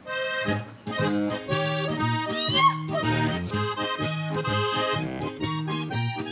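Accordion playing a lively instrumental lead-in in Bavarian folk style, with strummed acoustic guitar chords and steady bass notes underneath.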